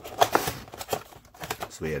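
A cardboard trading-card blaster box being opened by hand, its flap and the paper insert inside handled with a quick run of irregular crackles and rustles.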